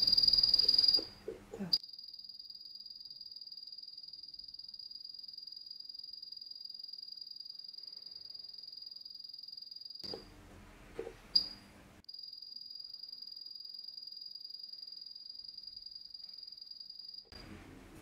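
A steady high-pitched whine, preceded by a louder burst at the start. It breaks off for about two seconds around ten seconds in, where two sharp clicks are heard, then resumes until just before the end.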